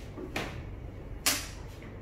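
Two sharp clicks from a Zebra DS9908R barcode and RFID scanner being handled against its base, the second about a second after the first and louder.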